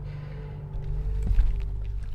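Microphone handling noise: a low rumble as the camera and its mic are moved and checked, heaviest around the middle, over a steady low hum.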